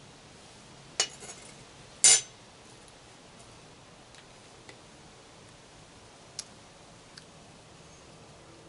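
Mouth and metal spoon sounds of tasting a spoonful of sauce: two short sharp clicks about a second apart, the second louder, then a few faint ticks.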